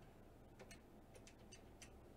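Near silence broken by about seven faint, light clicks, irregularly spaced, starting about half a second in.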